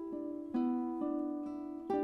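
Classical guitar music at a slow pace, several plucked notes ringing together. New notes sound about half a second in, near one second and near the end.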